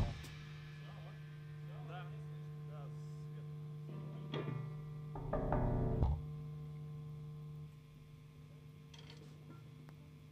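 Quiet gap between songs at a live band show. A steady electric hum from the stage amplifiers drops away about three-quarters through. Over it come a few brief, quiet guitar or bass notes, the loudest about five to six seconds in, and faint voices.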